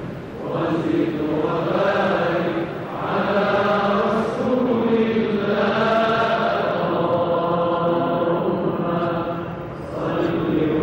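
A man chanting a Quran recitation in long, drawn-out melodic phrases, with short breaths between phrases about three seconds in and near the end.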